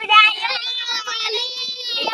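Children singing together in high voices, holding the notes fairly steadily.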